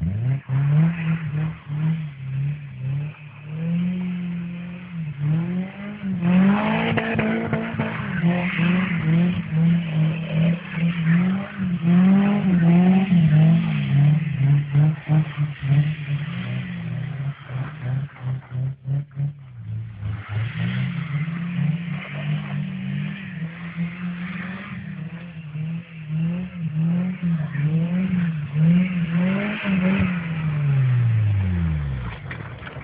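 Car engine being revved hard while drifting. Its pitch rises and falls over and over, about once a second, and drops away briefly about two-thirds of the way through.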